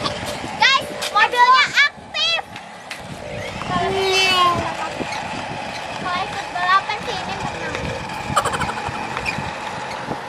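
Children's high-pitched voices calling out in short bursts, with a steady whine running underneath.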